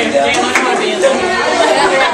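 Overlapping chatter of several teenagers talking at once, with no single clear voice.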